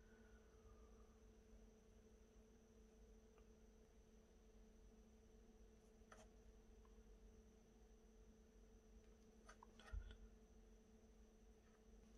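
Near silence: room tone with a faint steady hum and a few faint small ticks, one slightly louder low knock about ten seconds in.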